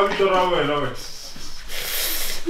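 A person's drawn-out groan sliding down in pitch for about a second, then a loud rasping, hissing rub near the end.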